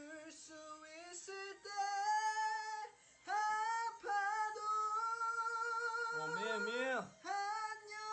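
A young man singing alone without accompaniment in a high voice, holding long sustained notes between short breaths, with a wide wavering vibrato on a note near the end.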